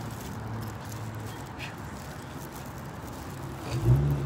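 Outdoor traffic ambience: a steady low hum of cars around a parking lot, with a louder low sound coming in near the end.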